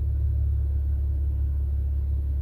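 Steady low rumble that stays even throughout, with no distinct passing vehicle or other event standing out.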